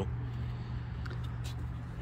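A steady low hum with a light background hiss, and a couple of faint ticks about a second in.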